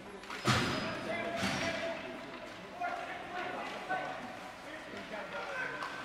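Ice hockey game in an echoing indoor rink: a sharp knock about half a second in as play starts from a faceoff, then a few scattered knocks of sticks and puck and distant shouting voices.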